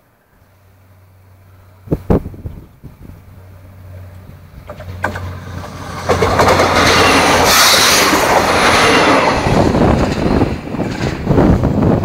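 PESA SA133 diesel multiple unit (railbus) approaching with a steady low engine hum that slowly grows. From about halfway it passes close by, loud with wheel and engine noise, and sharp clicks of the wheels over the rail joints come near the end.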